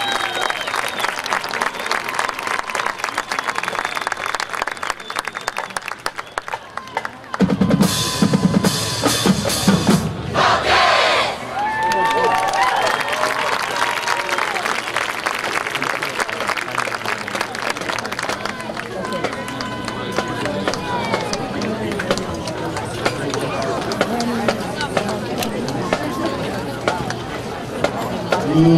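Crowd applauding and cheering. About seven seconds in, a marching band drumline starts with a few loud hits, then keeps up a drum cadence as the band marches off, with the crowd still cheering over it.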